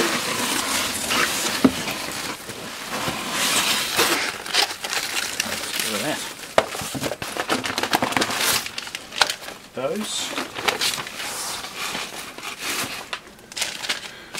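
Cardboard shipping box and its corrugated divider insert being handled and pulled apart, with plastic antistatic parts bags crinkling. It is a continuous irregular rustling and scraping with many sharp clicks and knocks.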